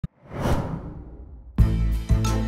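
A whoosh sound effect that swells to a peak about half a second in and fades away, then a sudden loud hit about a second and a half in that opens bass-heavy intro music.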